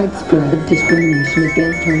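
Free-improvised electronic music: a choppy, fast-moving line of short bending notes in the low and middle range. About a second in, a high electronic trill enters, flicking rapidly between two pitches and sounding like a phone ringtone.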